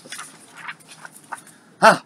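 Faint rustling and sliding of a paper sheet being moved across a wooden desk, with a few soft scrapes. Near the end a short voiced "huh".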